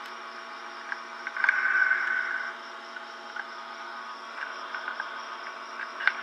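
A steady hum of several even tones, with a few faint clicks and a short hiss about one and a half seconds in.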